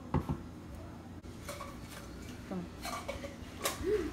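A metal spoon knocks twice sharply against the rim of an aluminium pot as Nutella is scraped off it into a thick chocolate mixture. Lighter clinks and scrapes against the pot follow as the mixture is stirred.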